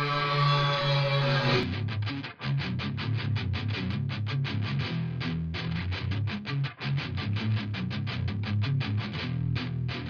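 Distorted electric guitar in drop B tuning playing a power-chord riff: one chord rings out for a moment, then fast repeated chugging power chords, about five or six a second.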